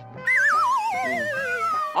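A comic sound effect: a warbling, whistle-like tone that slides steadily downward for about a second and a half.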